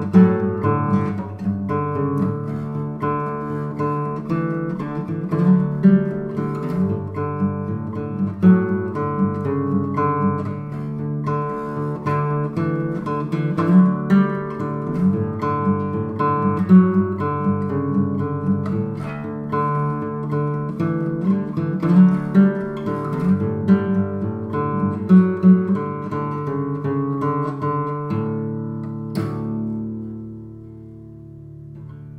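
Instrumental indie folk-rock music: an acoustic guitar playing a quick, rhythmic picked and strummed passage over sustained low notes, with no singing.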